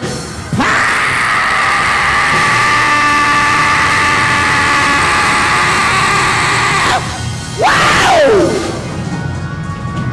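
A preacher's long, held cry into a microphone, sustained on one pitch for about six seconds, then a second, shorter cry that slides down in pitch. It is the shouted climax of his sermon, over steady backing music.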